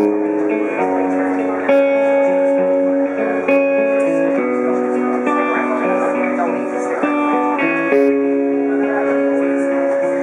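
Acoustic guitar played solo, picked notes and chords ringing out, with the chord changing about once a second.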